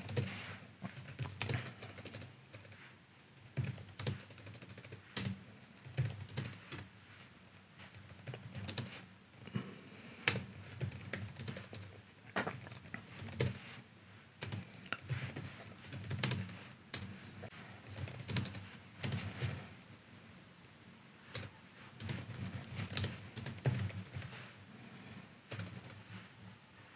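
Computer keyboard being typed on in short bursts of keystrokes, with brief pauses between the bursts.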